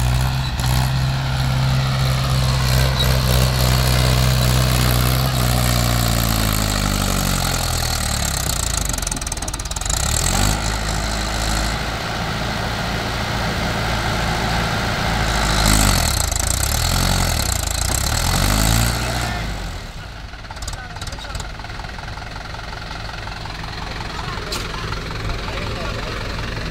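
Mahindra 475 DI tractor's four-cylinder diesel engine running under load as the tractor works through loose, freshly dug soil in a trench. The engine note drops about six to nine seconds in, swings up and down again around sixteen to nineteen seconds, then settles lower and quieter near the end.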